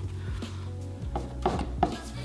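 A wad of paper towel rubbing and pressing a glued paper cutout flat against a canvas to work out ripples and air bubbles, with three short taps in the second half.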